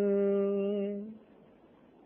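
A man's voice holding the final note of a chanted Persian verse on one steady pitch, fading out a little over a second in, leaving faint room tone.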